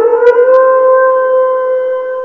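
A loud, steady held tone of one pitch with its overtones, starting abruptly and rising slightly in pitch over its first half second, like a horn or siren blast.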